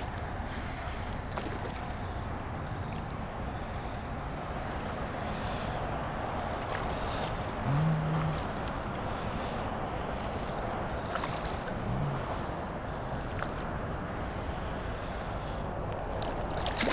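Steady rush of wind and water noise around a wading angler, with two brief low hums about eight and twelve seconds in.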